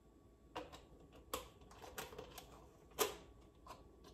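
A run of about nine irregular light clicks and taps, the loudest about three seconds in: a plastic cream carton, its screw cap and a cup being handled on a kitchen counter.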